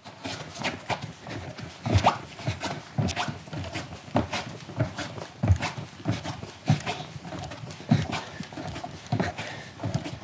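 Quick rhythmic breathing and soft thuds of bare feet on a rug from a man doing mountain climbers, a steady beat of short strokes, one per leg switch.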